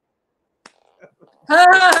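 A pause with a few faint clicks, then about one and a half seconds in a loud, drawn-out vocal 'oh' that rises and falls in pitch.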